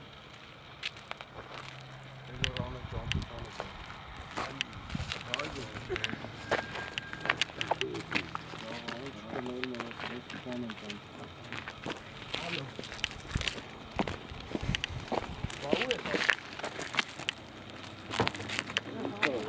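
Men talking in low voices, not close to the microphone, with scattered sharp clicks and knocks throughout.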